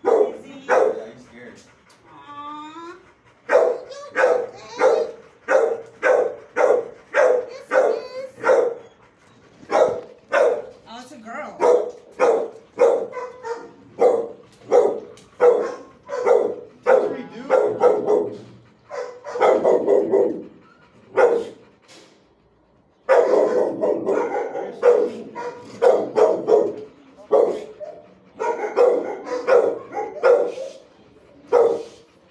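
Shelter dogs in kennel runs barking over and over, about two barks a second. A rising-and-falling whine comes a couple of seconds in, and the barking stops briefly about three-quarters of the way through.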